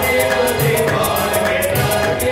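Hindu devotional song (bhajan) sung by a group of voices, over a low beat about once a second and fast, bright percussion strokes.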